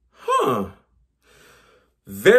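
A man's voiced sigh that falls in pitch, about half a second long, followed by a soft breath out.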